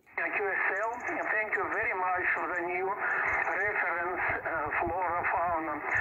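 A distant station's voice received over a portable HF transceiver's speaker: continuous talk in narrow, telephone-like single-sideband audio, cut off above about 3 kHz, after a brief dropout at the very start.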